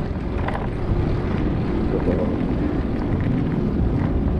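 Steady low rumble of wind buffeting the microphone of a camera on a moving bicycle, with the bike rolling along.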